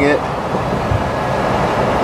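Steady road and tyre noise of a car driving at speed, heard from inside the moving vehicle.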